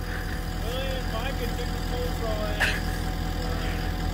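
An engine idling steadily. A faint voice comes in partway through, and there is one short sharp click a little after halfway.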